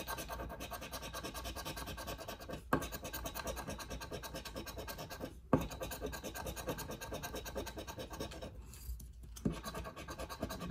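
A large metal coin scraping the coating off a paper scratch-off lottery ticket in rapid back-and-forth strokes, with short pauses and two sharp taps, about a third and halfway through, as the coin is repositioned.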